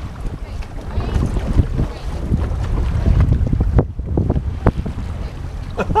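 Wind buffeting the microphone on open water: a steady low rumble that swells in gusts, with choppy water splashing against a boat's hull and a couple of short knocks about four and five seconds in.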